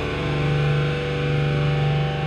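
Live beatdown hardcore band playing: distorted electric guitar holding steady, sustained low chords.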